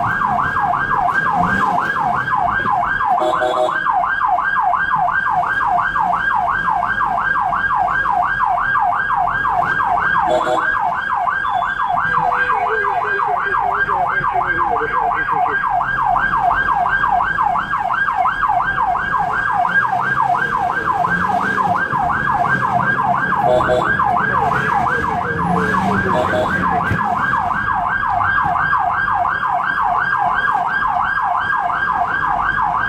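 Ambulance's electronic siren on a fast yelp, heard loud from inside the cab: rapid rising sweeps, about three a second, repeating without a break.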